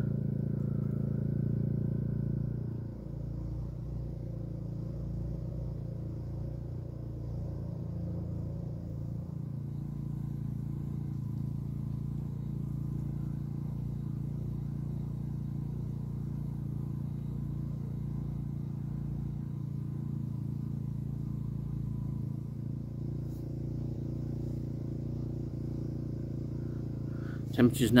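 Steady, unchanging low mechanical hum of a small running engine, with a slight drop in level about three seconds in.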